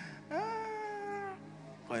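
A single drawn-out vocal cry: it sweeps up sharply, then is held for about a second with a slight downward drift. Soft, steady background keyboard tones sit underneath.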